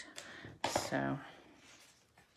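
Faint rustle of cardstock being picked up and moved across a craft mat.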